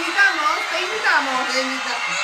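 A steady hiss runs throughout, with a few short vocal exclamations that slide up and down in pitch over it.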